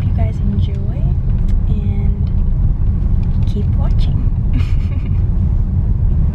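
Car cabin noise: a loud, steady low rumble of road and engine sound inside a car.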